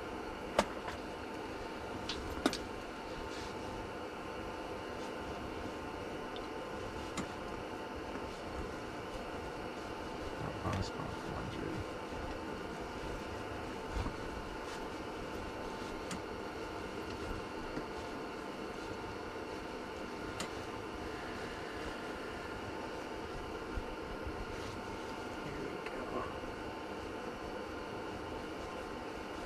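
A steady mechanical hum runs throughout, with a few short sharp clicks and taps over it, the loudest two within the first few seconds.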